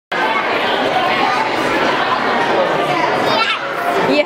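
Busy dining room full of overlapping voices, adults and children talking at once with no single voice standing out. About three and a half seconds in, one high voice briefly rises above the babble.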